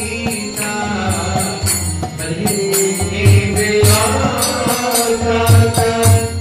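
Devotional group chanting (kirtan) with a drum and small hand cymbals keeping a steady beat.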